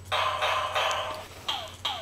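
Electronic toy drumsticks giving out synthetic drum sounds as they are swung: a longer, fuller sound in the first second, then short hits that drop in pitch, a few per second.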